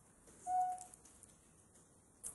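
Quiet room tone broken once by a short, steady, high whistle-like tone, about half a second in.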